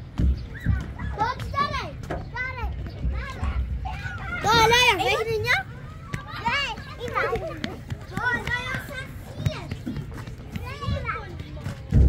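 Young children's high-pitched voices calling and chattering while they play, with one louder, longer shout about four to five and a half seconds in.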